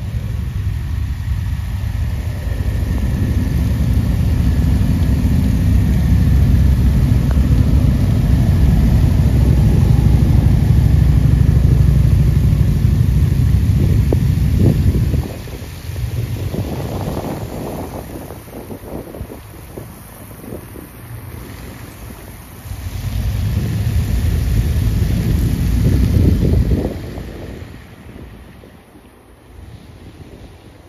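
Procession of police motorcycles riding slowly past on a wet road, with engines and tyre hiss on the wet pavement. A heavy low rumble of wind on the microphone runs through the first half, cuts off suddenly, and returns briefly near the end.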